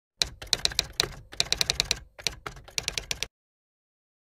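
Typing sound effect: rapid key clicks in about three quick bursts, stopping a little past three seconds in.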